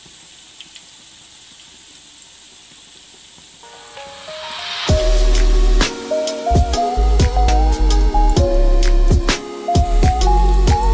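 Breaded jackfruit cutlets sizzling faintly in shallow oil. Then a rising swell and, from about five seconds in, loud background music with a heavy beat and a melody take over.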